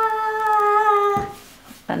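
A young child's voice holding one long, steady note that falls slightly and stops about a second in.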